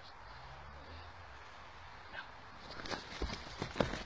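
A person running on grass, a quick run of several heavy footfalls close to the microphone starting about three seconds in.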